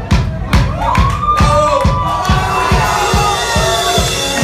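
Live band playing loudly with a steady drum beat of about four hits a second, and from about a second in a crowd cheering and shouting over the music.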